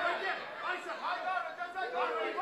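Several people's voices shouting and talking over one another, no one voice standing out.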